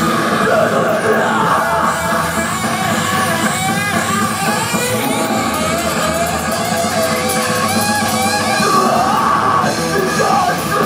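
Live punk band playing loudly: distorted electric guitar over bass guitar, with no break.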